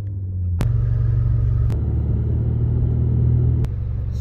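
Ford Mustang's engine and road noise droning inside the cabin, a steady low hum. It steps louder about half a second in and drops back near the end, at cuts between shots.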